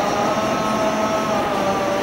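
A boy's solo voice chanting a naat, a devotional Urdu poem in praise of the Prophet, holding long notes that drift slowly up and down in pitch, over steady background hiss.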